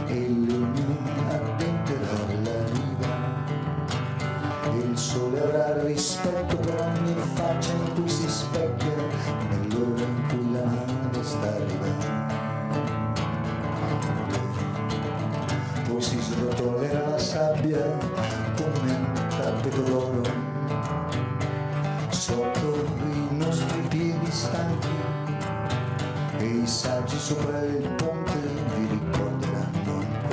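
Live music: a guitar playing an instrumental passage of a song, over a steady low tone.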